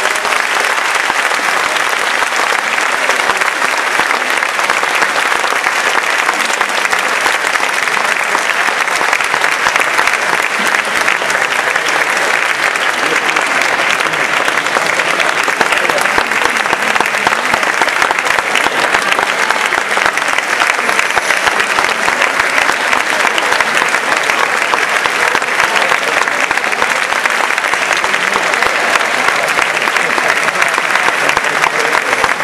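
Sustained audience applause: dense, even clapping with no letup, following the end of a concert band piece.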